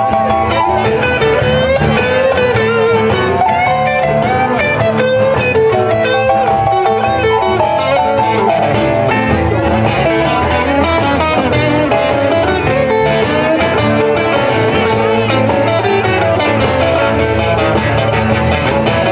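Live blues band playing: electric guitars over drums and keyboard, with the lead guitar line bending in pitch.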